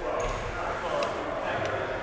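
Indistinct voices of people talking, echoing in a large indoor hall, with one sharp click about a second in.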